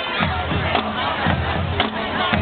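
High school marching band playing on the field, drums beating steadily, with the crowd cheering and shouting over the music.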